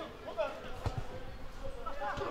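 Footballers shouting to each other on the pitch, with a dull thud of a football being kicked about a second in.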